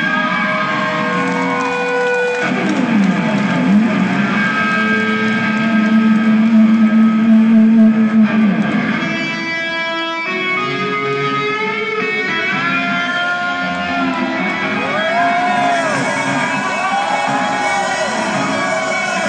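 Live electric guitar solo on a gold-top single-cut electric guitar, played loud through the stage PA. It has long sustained notes, a swooping drop and rise in pitch about three seconds in, a low note held for several seconds in the middle, and bent notes that arch up and down near the end.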